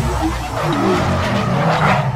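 Sound-effect car engine revving with tyres screeching, mixed with music: the soundtrack of an animated logo sting.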